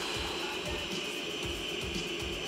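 Steady stadium crowd noise from a football match broadcast, a continuous din from the stands as a penalty taker steps up in a shootout.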